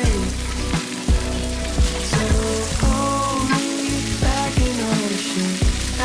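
Meat sizzling on a Korean barbecue grill, a steady crackle under background music with a melody and bass line.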